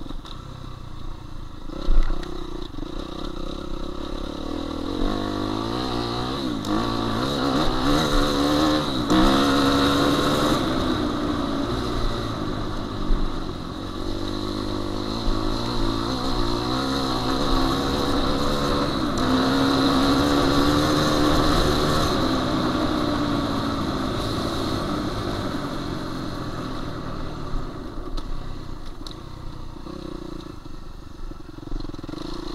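A 2016 Suzuki RM-Z250 four-stroke single-cylinder motocross bike being ridden on a dirt track, its engine revving up and easing off with the throttle. The revs climb around eight to ten seconds in and again around twenty seconds in. A sharp knock sounds about two seconds in.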